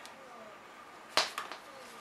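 A single sharp click about a second in, followed by a couple of faint ticks, as the garment steamer's power cord and plug are handled.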